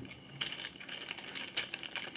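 Clear plastic bag crinkling and rustling as it is handled, with a scatter of light clicks and taps from the tubes inside it.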